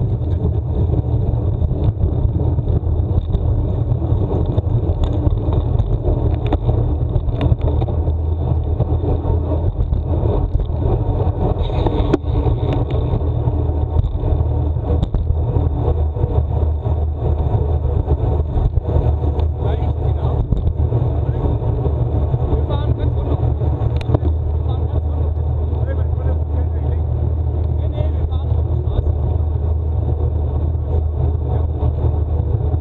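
Steady rolling noise of a road-bike ride at speed: a low rumble of tyres on asphalt with wind over the microphone, and a few short clicks.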